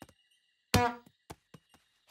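Cartoon sound effect of a ball bouncing on the ground: one loud bounce with a short pitched ring about three-quarters of a second in, then three quieter taps, coming closer together as it settles.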